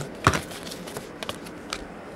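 Trading cards being handled and laid down: one sharp tap about a quarter second in, then a few faint light clicks.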